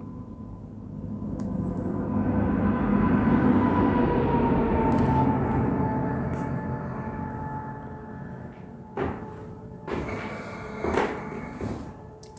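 A low rumbling noise that swells over a few seconds and slowly fades, carrying a faint tone that drifts down in pitch, followed by a few light knocks near the end.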